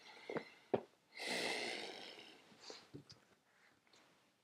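A man's long breathy sigh, about a second long and fading out, after a couple of small mouth clicks.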